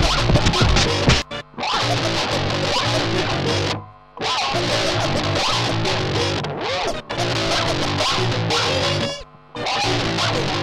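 Band music of distorted electric guitar, bass and drums with turntable scratching. The music cuts out abruptly for a moment several times.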